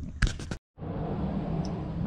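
A few quick clicks and knocks, then a brief dead dropout where the recording is cut, followed by steady low background noise.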